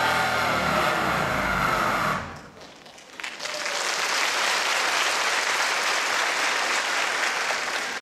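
Dance track playing and ending about two seconds in; after a brief lull, a theatre audience breaks into steady applause that carries on to the end.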